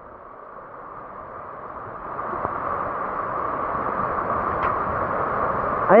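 Rushing water of a muddy river in flood, a steady noise growing louder over the seconds, with stones rumbling as the current rolls them along the bed.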